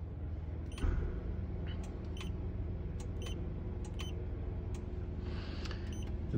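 Power exterior mirror motor humming steadily as the passenger-side mirror is adjusted, starting about a second in. A series of small clicks from the control presses sounds over it.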